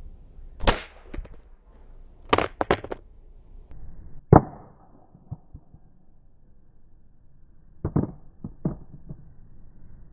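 An LG G Flex smartphone hitting asphalt pavement on its back: sharp clacks of the impact, each followed by smaller clattering bounces, heard over and over in separate groups. The loudest hit comes about four seconds in and rings briefly.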